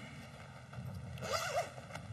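A clothing or gear fastener being pulled: one short rasping rip about a second and a half in, over low room noise.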